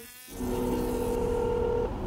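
Telephone ringing tone heard over a phone line while a call is being placed: a steady tone that starts about a third of a second in and breaks off briefly near the end, over a low background hiss.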